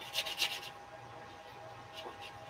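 Paintbrush bristles rubbing across watercolour paper in a few short scratchy strokes, bunched in the first half-second or so, then only faint brushing.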